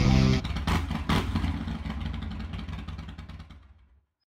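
A motorcycle engine revving, with two sharp bursts about a second in, then running on and fading out.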